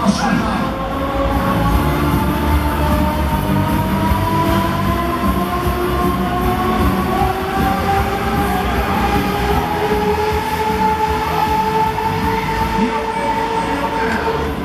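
Huss Break Dancer fairground ride running at speed: a continuous rumble from the turning platform under a whine of several tones that rises slowly in pitch as it spins.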